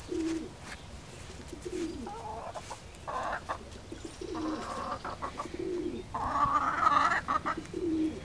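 Backyard hens clucking and murmuring in short bouts, with several short low coos from a pigeon in between.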